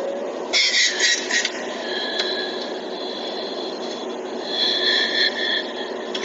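Steady car-cabin noise under a boy's crying, with a loud noisy burst about half a second in and thin, high wailing tones in the second half.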